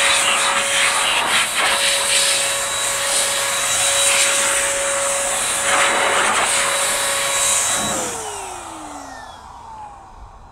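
Chemical Guys ProBlow handheld electric blower running at full speed: a steady rush of air with a high motor whine, blowing water out of a car's alloy wheel spokes. About eight seconds in it is switched off, and the whine falls in pitch as the motor spins down and fades.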